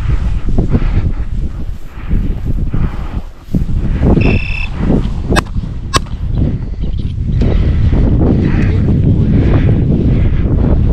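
Wind buffeting the microphone, with two shotgun shots from a hunter some distance off, about half a second apart, near the middle. The shots come out thin and not much louder than the wind.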